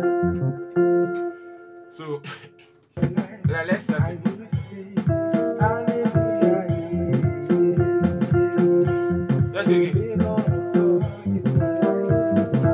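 Electronic keyboard playing a makossa groove: a pulsing bass line under repeated sustained chords. The playing fades off about two seconds in and comes back a second later, busier.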